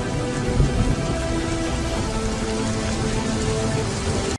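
A rain and thunder sound effect, a steady rush of rain with low rumbling, layered under music of slow held notes.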